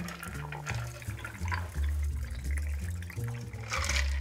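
Background music with a low bass line, over a faint trickle of a shaken cocktail poured through a fine-mesh strainer onto ice in a glass.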